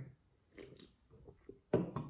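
A man swallowing a soft drink from an aluminium can in a few faint gulps, then a short, louder knock about 1.7 seconds in as the can is set back down on a wooden table.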